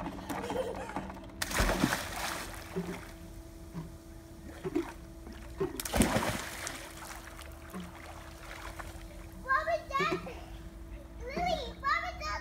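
Children jumping into a swimming pool: a big splash about a second and a half in, and a second, sharper one about six seconds in. Children's voices follow near the end.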